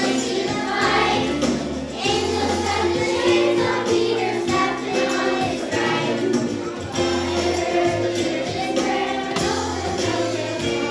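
A children's choir singing a song together over musical accompaniment with a steady bass line.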